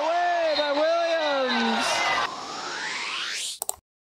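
A basketball commentator's long, drawn-out shout that drops in pitch at its end, over arena crowd noise. Then a rising whoosh that ends in a couple of quick clicks and cuts off suddenly.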